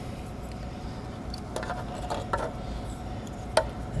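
A few small plastic clicks and rattles as the MAP sensor's electrical connector is worked and unclipped by hand, over a low steady hum. The sharpest click comes near the end.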